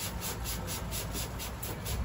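A hand rubbing briskly through hair and over the scalp during a head massage: a fast, even rhythm of rustling, scratchy strokes, about six a second.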